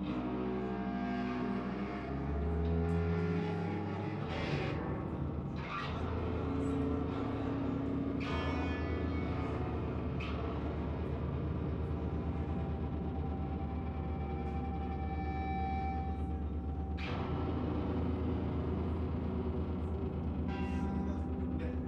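Live band music in a slow, droning passage: sustained low bass notes under effects-processed electric guitar.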